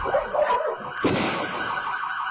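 Electronic warning siren sounding with a fast, wavering warble.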